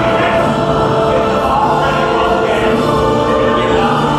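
Choral music with long held notes.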